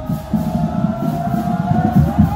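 Marching band performing: a long held note with steady drum beats under it.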